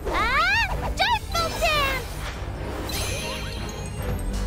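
High-pitched, squeaky cartoon-creature cries over background music. A long rising squeal opens it, followed by several shorter falling cries in the first two seconds, then only the music.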